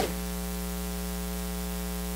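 Steady electrical mains hum with a buzzing stack of overtones, carried in the recording's audio chain, with a short click right at the start.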